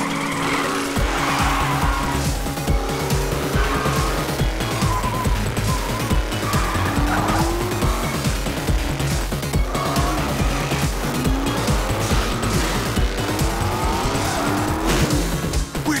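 Cartoon car-chase sound effects: a small buggy's engine revving and tyres squealing through turns. Underneath runs action music with a steady pulsing beat that starts about a second in.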